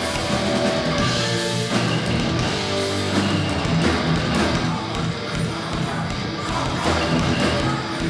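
Hardcore punk band playing live: distorted electric guitars, bass and drums, loud and without a break.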